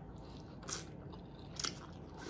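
Close-miked eating of spaghetti with meat sauce: wet chewing and mouth sounds, with two short, sharp smacks, one just before a second in and a louder one near the end.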